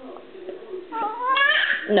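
A baby's high-pitched whine, starting about a second in and rising steeply in pitch for just under a second: a fussing cry for more food.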